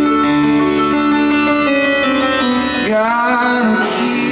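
Live grand piano playing a song accompaniment, with a man's voice singing a long held note with vibrato over it from about two and a half seconds in.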